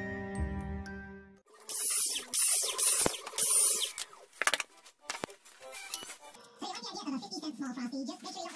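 About a second of background music, then fast-forwarded workshop audio. There are three short bursts of a cordless drill boring through a cardboard template into wood, then a radio in the background whose voices are sped up and sound really funny.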